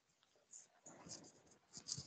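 Near silence on a video call, with faint scattered clicks and crackle.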